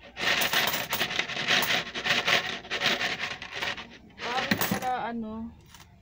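Coins pouring out of an upturned plastic coin bank onto a pile of coins on cardboard: a dense jingling clatter for about three and a half seconds, then thinning to a few scattered clinks.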